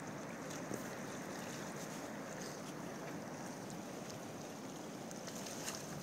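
Steady rushing of wind and lake water lapping around floating wooden dock sections, with a couple of faint knocks about a second in and near the end.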